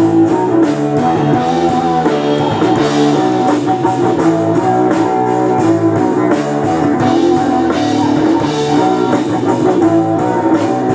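Live rock band playing: electric guitar chords over a drum kit, changing chord every second or so.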